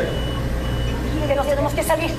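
An electronic alarm beeping with a high, steady tone that stops and restarts, over a steady low hum, heard through a phone's recording. A voice speaks briefly near the end.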